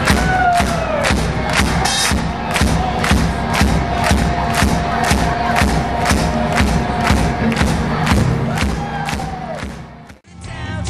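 Band playing live over a hard, steady drum beat of about three hits a second, with a crowd cheering and shouting along; the sound fades out near the end.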